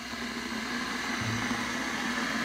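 Electric kettle switched on and heating water: a steady rushing hiss with a faint low hum, slowly growing louder.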